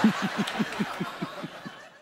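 One person laughing in a rhythmic ha-ha-ha: about nine even beats, roughly five a second, each one dropping in pitch, fading away toward the end.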